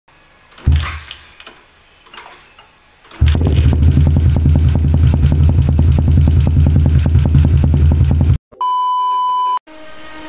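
Yamaha LC135 single-cylinder four-stroke motorcycle engine, after a thump and a few knocks, starts about three seconds in and idles loudly and steadily through an aftermarket open exhaust, with even firing pulses, then cuts off suddenly. A steady electronic beep follows near the end.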